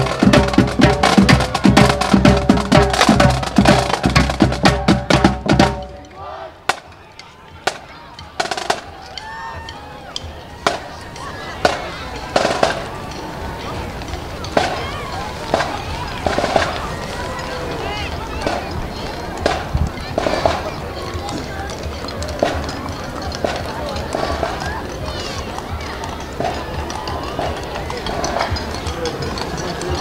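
Marching band playing drums and trombones to a fast, loud beat, which cuts off suddenly about six seconds in. After that comes a quieter street crowd: murmuring voices with scattered sharp knocks.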